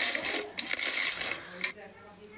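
Pink slime squeezed and kneaded by hand, making a dense run of crackling, clicking sounds that stop suddenly near the end.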